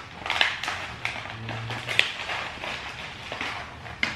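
A plastic snack pouch of granola crinkling as it is shaken and dug into, with granola clusters rattling inside: a run of small irregular crackles and ticks.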